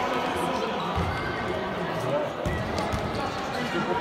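A futsal ball being kicked and bouncing on a hard indoor court, a few dull thuds in a reverberant sports hall, under a steady background of spectators' and players' voices.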